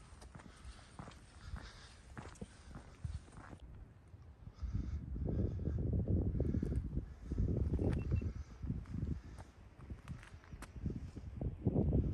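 Footsteps on a flagstone path for the first few seconds. From about four and a half seconds in, gusts of wind buffet the microphone, a low rumble that rises and falls and is the loudest sound.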